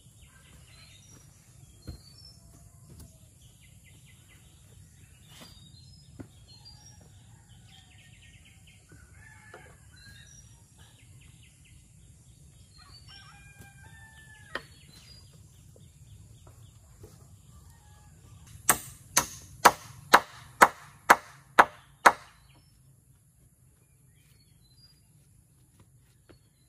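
Birds calling throughout, with a few scattered knocks of wooden poles. About three quarters of the way through come eight sharp hammer blows on timber, about two a second.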